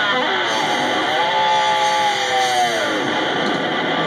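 Fender Stratocaster electric guitar playing a live rock solo: a few quick notes, then a long held note from about a second in that bends down in pitch near the three-second mark.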